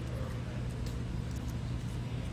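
Steady low background hum of a restaurant dining room, with a few faint clicks and no speech.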